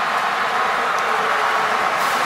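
Large stadium crowd cheering a touchdown: a steady, even wall of noise with no single voice standing out.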